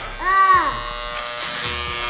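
Corded electric hair clippers buzzing steadily as they are run over a man's scalp, cutting his hair. A brighter hiss joins in the second half.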